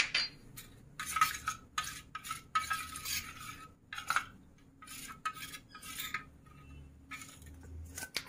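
Steel spoon stirring a cornflour slurry in a stainless steel bowl, scraping and clinking against the bowl in a run of irregular strokes.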